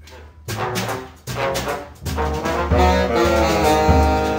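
Big band jazz music with a brass section playing. It comes in loud about half a second in and builds to a full sustained chord in the second half.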